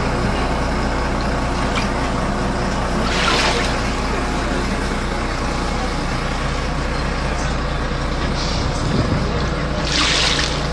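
City bus running, heard from inside the cabin: a steady low engine drone, with a short burst of hiss about three seconds in and another at the end.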